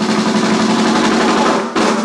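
Two drum kits played together in a live drum duet: fast, dense rolls on snare and drums, with a short break just before the end.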